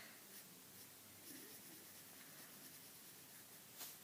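Faint scratching of a graphite pencil drawing on paper.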